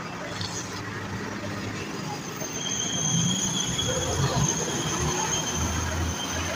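Street traffic running by, a low rumble that grows louder about halfway through as vehicles pass. A steady high-pitched whine starts about halfway in and holds.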